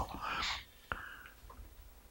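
A man's breathy exhale, like a whispered sigh, then a single sharp click just under a second in, followed by a few faint ticks.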